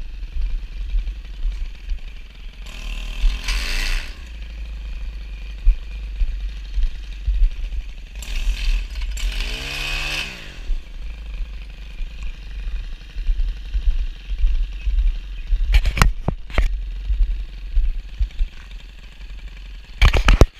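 Gas-powered stick edger running along the concrete edge, its engine revved up twice, the pitch climbing and falling back each time. A few sharp knocks sound near the end.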